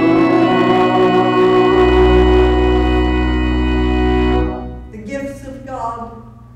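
Organ holding a sustained closing chord, with a deep pedal note joining about two seconds in. The chord cuts off about four and a half seconds in, and a voice begins.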